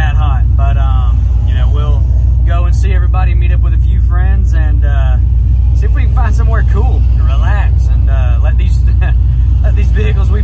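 Steady low rumble of a turbocharged squarebody pickup heard inside its cab, with a man talking over it.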